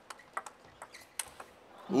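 Table tennis ball struck back and forth in a rally, a string of sharp clicks off the bats and the table a few tenths of a second apart.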